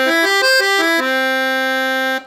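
Excelsior Accordiana piano accordion's treble side played on its oboe register, a single middle reed: a quick run of notes stepping up and down, then one note held for about a second before it stops.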